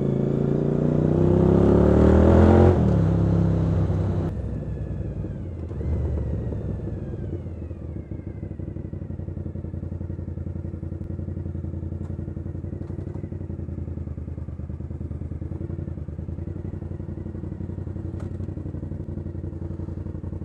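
Suzuki motorcycle engine revving up under acceleration, its pitch rising for about three seconds. It then drops away to a steady idle as the bike waits in traffic.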